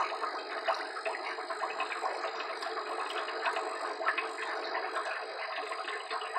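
Small, irregular splashes and drips of water as a hand moves through shallow water, over a steady background hum.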